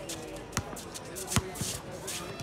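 A basketball dribbled on an outdoor hard court: two sharp bounces under a second apart, the second louder.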